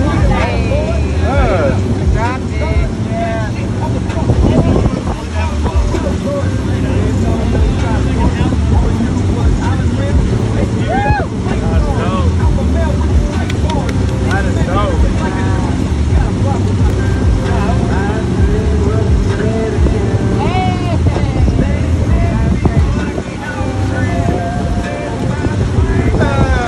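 A wake boat's engine running steadily under way, with rushing water from the wake and people's voices calling out over it.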